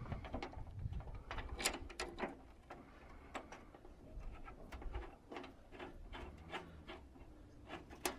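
Faint, scattered clicks and light metallic taps as screws are fitted by hand, finger-tight, through the metal flashing of a solar roof tile.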